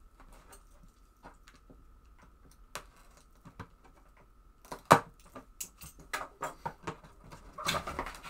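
Cardboard packaging being handled and opened: scattered clicks and taps, one sharp click about five seconds in, then a run of scrapes and clicks as a blade cuts the tape seal on the box lid and the lid is lifted near the end.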